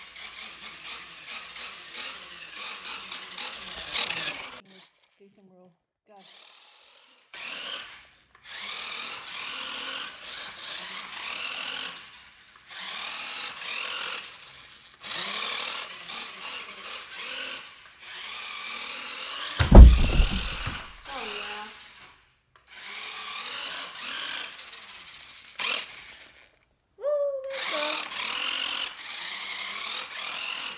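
Small electric motor and gears of a toy RC off-road buggy whirring in repeated bursts as the throttle is worked on and off, with short pauses between runs. About two-thirds of the way through there is a single loud, heavy thump.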